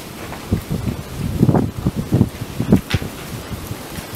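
Irregular rustling and crunching with low thumps from footsteps on debris, with handling and wind noise on a handheld phone microphone.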